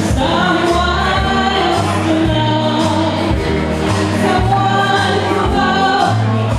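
A woman singing karaoke into a microphone over a recorded backing track with a bass line.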